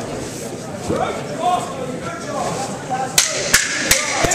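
Indistinct voices of a crowd in a large hall, then three sharp smacks near the end, about a third of a second apart, the loudest sounds here.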